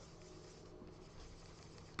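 Faint scratching of a pen stylus on a drawing tablet's surface as a small dark area is scribbled in.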